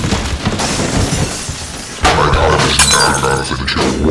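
Loud, chaotic crashing and shattering over music, jumping suddenly louder about two seconds in.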